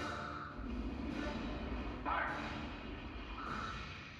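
Live orchestra playing a film score in a concert hall, heard from the audience, with a deep rumble starting about half a second in and a sudden swell about two seconds in.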